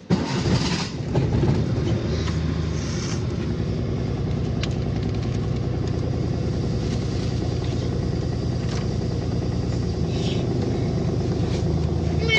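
Suzuki Mehran's 800 cc three-cylinder petrol engine started from cold: it catches at once on the key, runs louder and rougher for the first two seconds, then settles into a steady idle.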